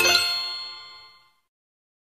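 The last note of a piece of music, a single bell-like chime struck once and left to ring, fading away to silence in about a second and a half.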